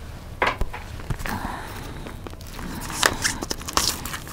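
Plastic shrink-wrap on an LP gatefold sleeve crinkling and rustling as it is handled and picked at by hand, in scattered short crackles and light knocks, louder about half a second in and again near the end.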